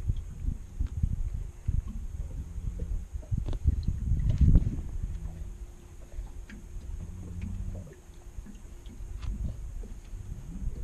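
Low, uneven wind rumble on the microphone with scattered small clicks and knocks of gear being handled in an aluminum fishing boat. The rumble and knocks are loudest around the middle and ease off after.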